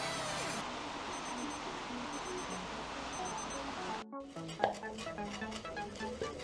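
Background music, with a digital kitchen timer's alarm beeping in four short groups of rapid high beeps from about a second in, the sign that the countdown has reached zero. The music breaks off briefly and a different track starts about four seconds in.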